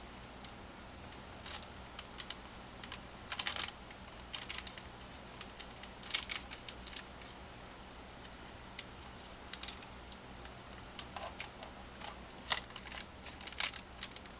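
Irregular light clicks and rustles of a paper journal being handled while a needle and thread are worked through its binding holes, with a few small clusters of clicks.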